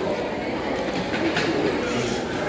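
Steady background din of a busy restaurant dining room: indistinct voices and general clatter, with a couple of light clicks a little past the middle.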